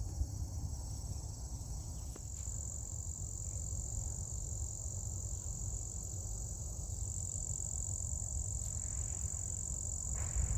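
Steady high-pitched chorus of singing insects in the prairie grass, over a low rumble of wind on the microphone.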